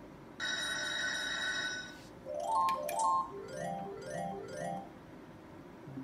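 Merkur Lucky Pharao slot machine's electronic sound effects as a Power Spin plays out and a win is added. A held chiming chord lasts about a second and a half. Then come two bright ringing jingles, which are the loudest part, and three short repeated chimes.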